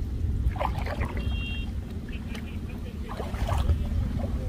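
Low wind rumble on the microphone and the water sounds of a narrow wooden canoe being paddled through floating water hyacinth, with a few faint snatches of voices.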